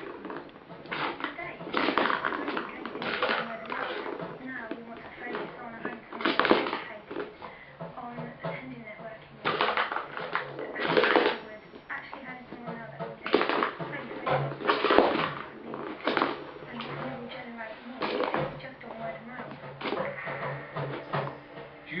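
A ball rattling and rolling around a plastic circular-track cat toy as a kitten bats at it, in irregular bursts of clatter.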